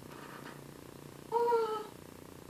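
One short vocal sound about a second and a half in, a single voiced note that falls slightly in pitch and lasts about half a second.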